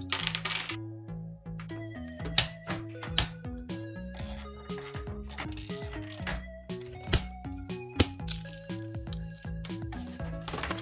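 Background music with held low notes, over irregular sharp clicks and clatters of small 3D-printed plastic parts and cable ties being handled. The loudest clicks come about two and a half seconds in and near the eight-second mark.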